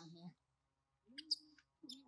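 Faint forest sounds: a couple of short, sharp bird chirps, with two brief low voice-like calls, one at the start and one about a second in.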